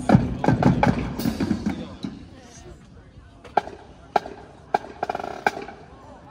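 A marching drum line of snare and bass drums plays a fast passage that stops about two seconds in, its last strokes dying away. Four sharp single clicks follow, about half a second apart.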